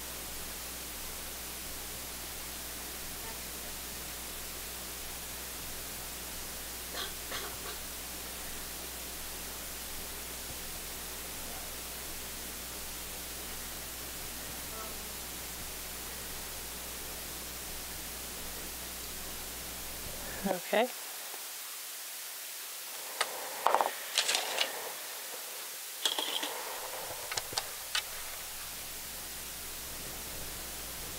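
Steady background hiss with a low hum. In the last third, a cluster of short clicks and knocks from small tools handled at a microsoldering bench.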